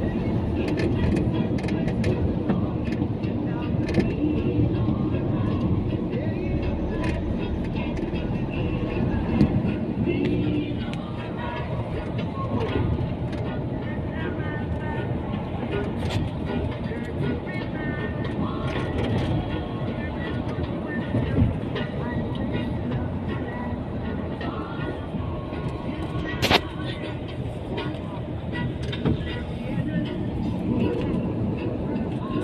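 Steady road and engine noise of a car driving, heard from inside the cabin, with a few short sharp clicks, the loudest near the end.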